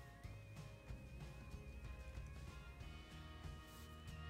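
Faint background music: a held melody line over steady low notes, stepping up in pitch about three seconds in.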